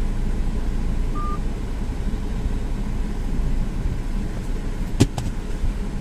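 Steady low rumble of a Maruti Suzuki car idling, heard from inside its closed cabin. A short high beep comes about a second in, and a sharp click about five seconds in.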